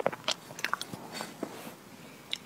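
Close-miked chewing of soft, sticky chocolate lava cake: a quick run of wet mouth clicks and smacks, the loudest right at the start.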